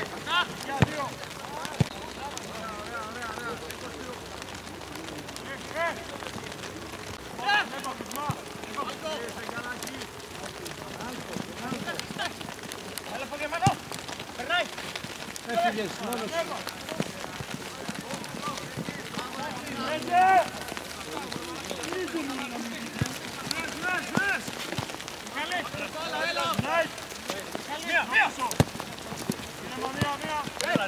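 Scattered distant shouts and calls of football players and spectators over a steady background hiss, with a few sharp knocks.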